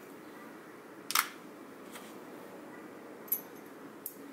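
Small lens parts being handled on a tabletop: a sharp click about a second in, the loudest sound, and a smaller click near the end, over a faint steady room hum.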